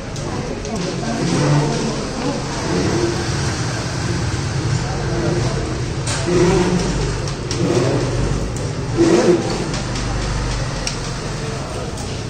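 Indistinct voices of several people talking, over a steady low hum.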